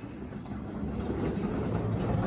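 Old Otis elevator's doors sliding shut, a low mechanical rumble that grows steadily louder.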